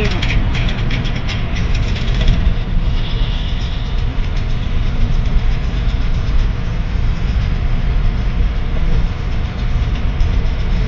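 Steady low rumble of tyre and road noise heard inside the cabin of a moving car.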